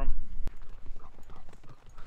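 Soft, irregular footfalls on dry ground, a rapid run of light thuds. They follow a brief low rumble and a single click about half a second in.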